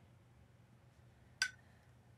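Quiet room tone with one brief light tick about one and a half seconds in.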